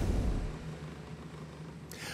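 Small aluminium boat's outboard motor running steadily under an even wash of water and wind noise, with a brief low rumble at the start.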